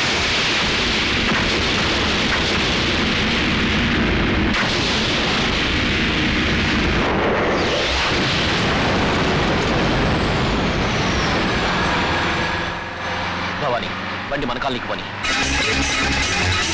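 Film sound effects of a car exploding and burning: a loud, continuous blast-and-fire noise that eases off after about twelve seconds.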